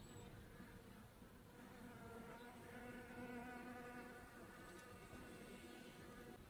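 Faint hum of a bee flying, growing louder about two seconds in and fading again after about five seconds.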